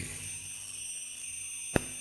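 A steady, high-pitched electronic whine made of several constant tones, with a single click near the end.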